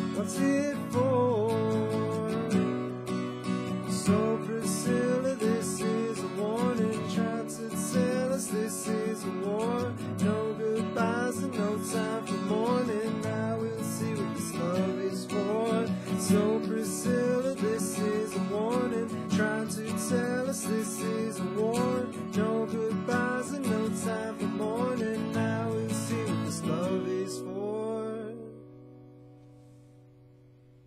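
Acoustic guitar strummed in a steady rhythm with a melody of notes sliding up over the chords. The playing stops about two seconds before the end, and the last chord rings out and fades.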